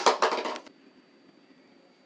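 A short sound dies away in the first half-second, then near silence with only a faint, steady high-pitched whine.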